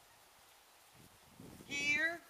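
A single short, wavering vocal call near the end, lasting about half a second.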